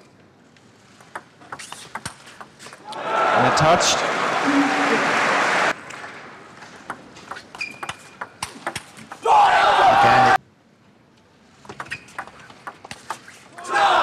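Table tennis rallies: a celluloid ball clicking off bats and table in quick exchanges, with crowd cheering and shouting after two of the points. Each cheer cuts off suddenly.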